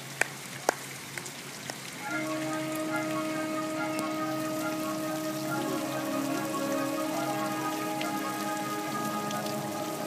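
Marching band holding long, slow sustained chords on brass and winds, coming in about two seconds in after a few sharp clicks about half a second apart.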